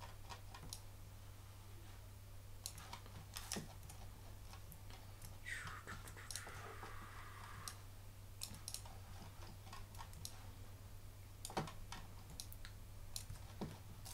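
Faint, scattered clicks of a computer mouse and keyboard over a steady low hum, with a brief soft hiss about six seconds in.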